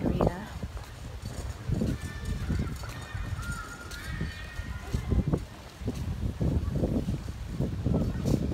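Footsteps of someone walking on a stone walkway, a dull thud about every half second, with indistinct voices in the background.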